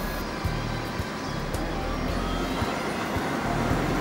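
Tractor engine running steadily under load, a constant drone with background music underneath.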